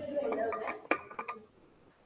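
A few sharp clinks and knocks over a voice in the background, dying away about a second and a half in.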